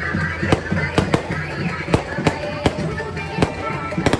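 Aerial fireworks bursting: about seven sharp bangs at irregular intervals, with music playing underneath.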